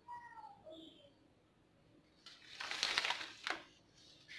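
Thin thermal receipt paper rustling loudly for about a second as the printed receipt is handled and laid down. Before it, in the first second, there is a faint call that slides down in pitch.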